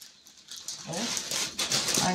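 Dry long-grain rice rustling in a plastic bag as a measuring cup scoops through it, starting about a second in.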